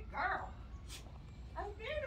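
A dog whining twice in short, high-pitched cries, with one sharp click between them.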